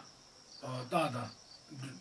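Crickets chirring in a steady high-pitched drone under a man's unhurried talk, which comes in a short phrase about half a second in and again near the end.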